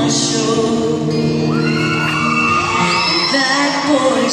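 Live country band playing a sung passage in a large arena, with cheers and whoops from the crowd over the music.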